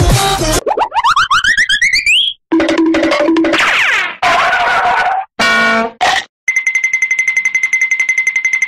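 Background electronic music cuts off about half a second in, followed by a string of cartoon sound effects: a long rising boing-like glide, several short pitched blips and pops with brief gaps between them, then a steady high-pitched tone pulsing rapidly near the end.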